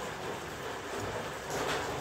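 Rain falling steadily, an even hiss, with a brief louder swell near the end.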